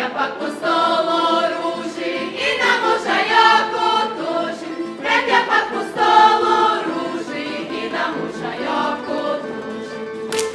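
Folk dancers singing a Međimurje folk song together in unison, accompanied by tamburicas. The singing is loudest for the first seven seconds, then softer.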